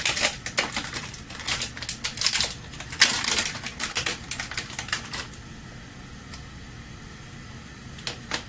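Plastic film of a sliced-ham pack crinkling and crackling as it is peeled open by hand, stopping about five seconds in.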